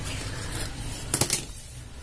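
A quick cluster of light clicks a little past one second in, over a low steady hum: handling noise as a moth orchid is worked over lumps of charcoal potting medium.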